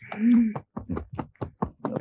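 A man cries out 'Aa!', then a horse's hooves clop in a quick, even run of about six knocks a second.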